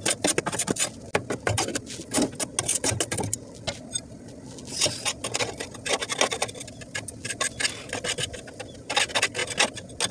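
Rapid, irregular scraping and rasping as caked wet, moldy grass is scraped and pulled off the underside of a mower deck. The gunk clogs the deck and spoils the blades' suction.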